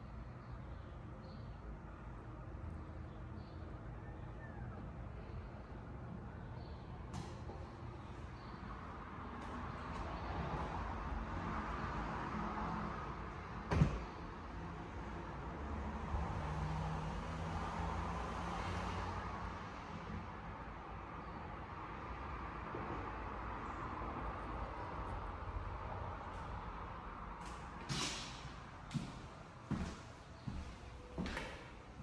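Steady low background noise that swells through the middle, with one sharp knock about halfway through and a few quick knocks near the end.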